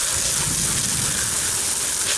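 Water spray hitting a crate of freshly dug potatoes as they are washed, a steady hiss like rain.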